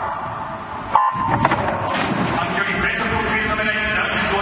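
Electronic starting signal sounding once about a second in, a short steady tone, starting a swimming race, followed at once by a steady wash of crowd noise and splashing as the swimmers dive in.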